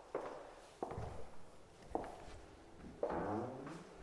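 Slow footsteps on a hard floor, about four steps roughly a second apart.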